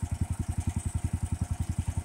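Duramax XP18HPE 18 hp single-cylinder engine on a Bearcat SC-3206 chipper shredder running steadily with nothing being fed. It gives an even, rapid train of exhaust pulses.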